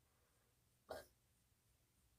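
Near silence: room tone, broken about a second in by one short spoken word, "but".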